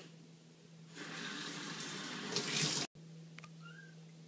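Water running from a sink faucet onto a ceramic bowl, starting about a second in and getting louder as it plays over the bowl, then cutting off suddenly.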